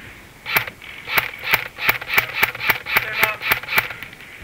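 Airsoft gun firing a string of about eleven single shots, sharp cracks coming slightly faster toward the end, about three a second.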